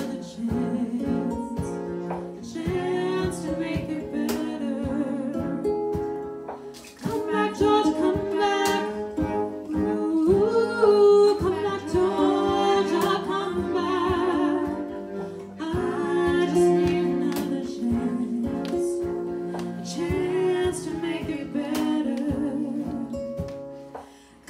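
Live indie-soul band playing: female voices sing wordless, wavering lines over guitar, keyboard and cello. The sound drops briefly just before 7 s and thins out near the end.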